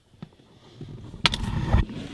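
Handling noise close to the microphone as a sunroof emergency crank is fitted to the sunroof motor: a faint tick, then rustling, a sharp metallic click a little past halfway, and a low thump near the end.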